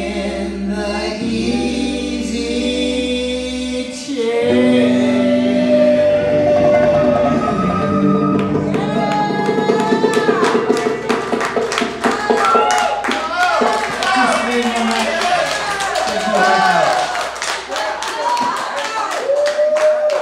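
Live instrumental passage: a wooden flute playing a melody over electric bass and electric guitar, starting with long held notes and growing busier with quick picked notes and bending melodic lines in the second half, as the song winds down to its close near the end.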